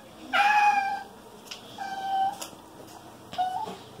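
Small dog whining three times, each a high, short whine of about half a second, while it receives subcutaneous fluids under the skin.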